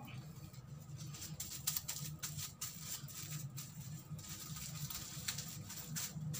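Clear plastic cap over oiled hair crinkling as hands press on it: a run of small irregular rustles and crackles over a low steady hum.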